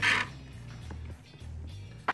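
Quiet background music carried mainly by a low bass line. Right at the start there is a brief scraping rustle as the multimeter's plastic case and circuit board are handled.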